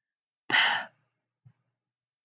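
A person's short, breathy sigh, about half a second in.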